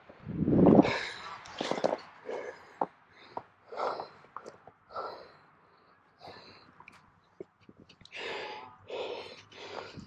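Close camera handling noise about half a second in, then a string of short, irregular soft puffs and crunches: a man's breathing and his steps in fresh snow.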